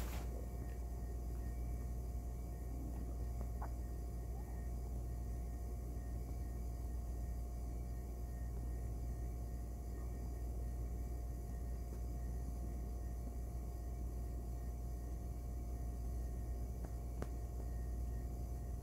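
Steady low background hum with a faint thin tone above it, broken by a couple of faint clicks.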